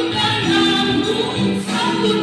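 A man singing through a handheld microphone and PA speaker, with a woman's voice joining in, over amplified music.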